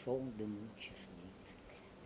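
A man's voice reciting verse for about the first half second, with a short sound near one second in, then low room tone.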